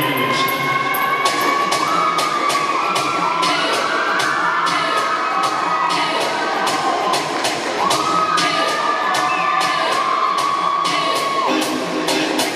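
A dancehall track with a steady beat plays loudly over the hall's speakers, with a crowd cheering and shouting over it.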